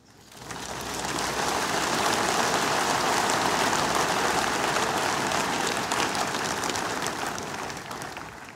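A large congregation applauding, a dense steady clapping that swells up within the first second and fades away near the end.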